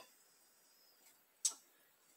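A single short, sharp clink of kitchenware, glass or metal knocking against the steel mixing bowl, about one and a half seconds in; otherwise quiet.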